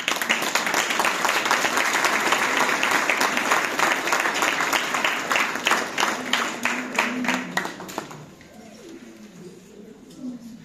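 Audience applauding, loud from the start, thinning to scattered claps and dying away about eight seconds in.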